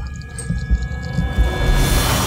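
Dramatic background score: sustained eerie tones over low pulsing beats, swelling into a rising whoosh near the end.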